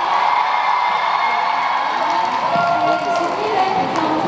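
A crowd of fans cheering and shouting, with a few voices standing out from it in the second half.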